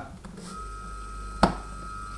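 A 220 V, 293 W electric motor switched on by plugging it into the socket, starting about half a second in and then running with no load: a steady low hum with a thin steady high whine over it. One sharp click comes in the middle.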